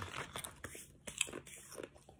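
Faint, scattered crackling and rustling of paper packaging and tissue paper being handled, with a few sharper clicks.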